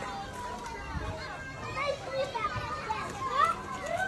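Preschool children playing, many high voices calling and chattering over one another.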